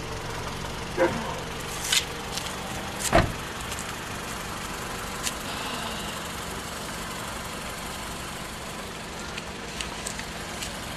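Toyota minivan's engine idling steadily. Three sharp knocks sound in the first few seconds, the loudest about three seconds in, from the car door and someone climbing out.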